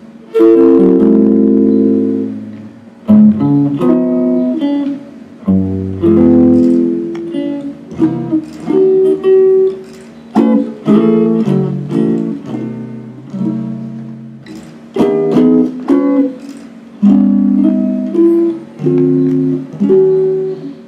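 Hollow-body archtop jazz guitar playing chords: several notes struck together, in short phrases, each chord left to ring and fade before the next.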